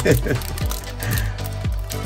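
Foil Pokémon booster pack crinkling and tearing as it is ripped open by hand, over steady background music.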